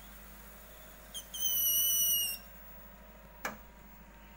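A single steady high-pitched whistle, lasting about a second, starts about a second in. A sharp click follows near the end, over a faint low hum.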